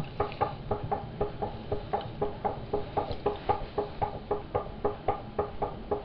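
Potter's electric wheel spinning, with a steady rhythmic knock repeating about five times a second.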